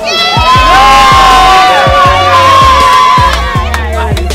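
A group of people cheering and shouting together in one long held cry that fades out after about three seconds, over background music with a steady beat.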